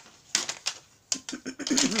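A series of sharp plastic clicks and taps as a plastic watercolor paint box and its mixing tray are handled and fitted together, followed near the end by a throat clear.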